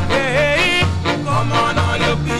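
Early Jamaican ska record playing: a sung vocal line wavering upward about half a second in, over a repeating bass line and a steady off-beat rhythm.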